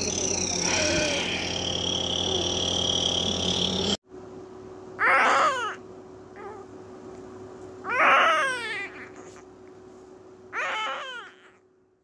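Newborn baby crying: three short cries a few seconds apart, each falling in pitch, starting about five seconds in. Before them a loud steady hiss with high whistling tones cuts off suddenly.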